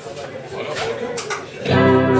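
Voices and room noise, then about a second and a half in a live band with electric guitar comes in loudly, opening a song.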